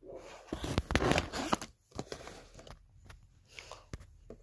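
A cardboard box being opened, its tape seals tearing, with rustling, scraping and a few sharp clicks. It is loudest in the first second and a half, then quieter handling follows.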